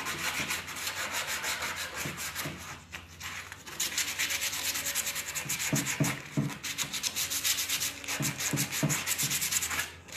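Sandpaper rubbed by hand over old varnished wood in fast back-and-forth strokes, scuffing the crackly varnish to prepare the surface for paint. The strokes let up briefly about three seconds in.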